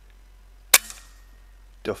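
A single sharp shot from an Air Arms S510 pre-charged pneumatic air rifle, less than a second in, with a brief hissy tail. It is a duff shot.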